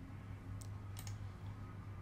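Two faint clicks of a computer mouse, about half a second apart, advancing the presentation slide, over a steady low electrical hum.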